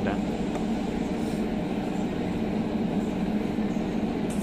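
Steady mechanical background hum with a faint unchanging tone, no distinct knocks or clicks.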